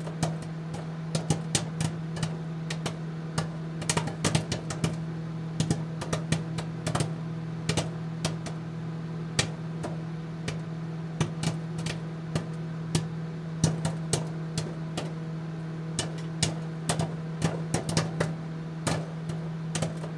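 End-card sound bed: a steady low hum with irregular sharp clicks and crackles scattered through it.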